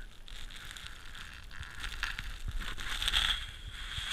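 Rustling and scuffing close to the microphone as a schnauzer tugs and chews a plush toy on carpet, with scattered light clicks. It gets louder about three seconds in.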